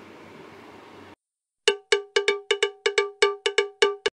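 Outro jingle: about a dozen quick, sharply struck, cowbell-like notes at a single pitch, played in loose pairs and each dying away fast, starting halfway in. Before it, a faint room hum cuts off abruptly.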